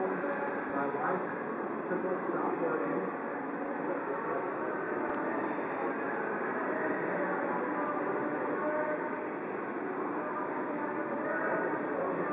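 Steady ambience of a crowded pedestrian scramble crossing: a dense hubbub of many voices over a continuous rumble of city traffic.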